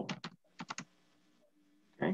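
Typing on a computer keyboard: a quick run of about half a dozen keystrokes within the first second.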